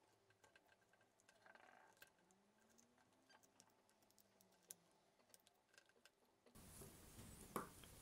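Near silence with a few faint, scattered clicks from a screwdriver and the plastic parts of a mains plug being handled during assembly.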